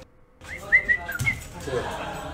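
A pet dog whining in a few short, high-pitched rising-and-falling whines, starting about half a second in.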